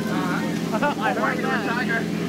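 A man's voice over the steady, unbroken hum of a tour boat's motor.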